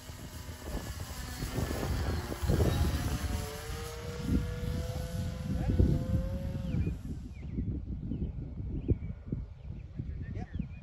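Radio-controlled model airplane's motor whining as it flies overhead. Its pitch rises about two seconds in, holds steady, then cuts away about seven seconds in. Wind buffets the microphone.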